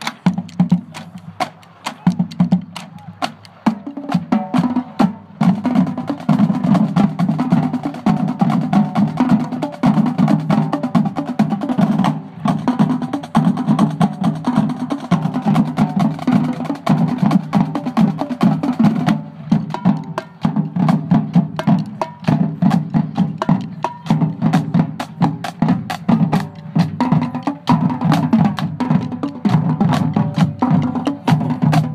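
Marching drumline of snare and bass drums playing a fast cadence of rapid strikes, lighter at first and filling out about four seconds in, with brief breaks about 12 and 19 seconds in.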